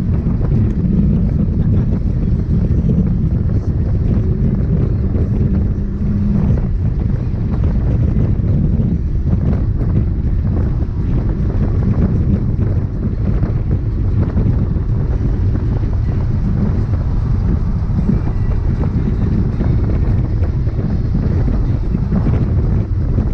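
In-cabin noise of a Mazda NA MX-5 driven at speed: the four-cylinder engine running under load beneath a loud, steady rumble of road and wind noise.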